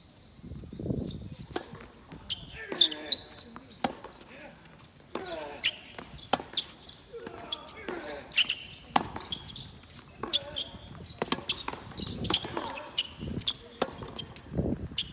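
Tennis point on an outdoor hard court: the ball is bounced before the serve, then a rally of sharp racket strikes and ball bounces follows, mixed with short high shoe squeaks.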